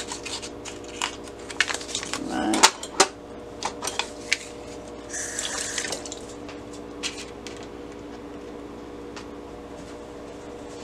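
Clicks and taps against a metal baking pan, then a short splash of liquid poured in about five seconds in, as water goes onto yellow Kool-Aid powder for dyeing paper. A low steady hum runs underneath.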